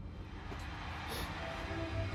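Quiet opening of a rock band's live concert recording played back: a low hum under a wash of noise that slowly swells, with faint sustained tones coming in about halfway through as the intro builds.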